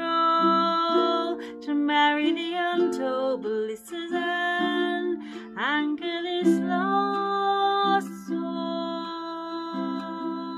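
A woman singing a slow, sustained melody, her voice bending and gliding between notes, while she strums chords on a ukulele.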